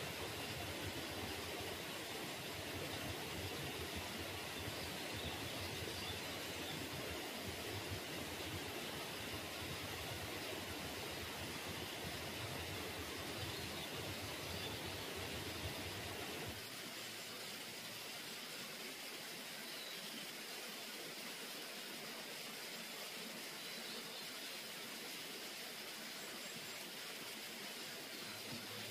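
Steady outdoor forest ambience: an even hiss with no distinct events. About 16 seconds in the low rumble drops away and the hiss carries on a little quieter.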